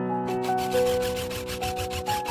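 Sheet-metal cover rasping as a gloved hand rubs and slides it, over background piano music.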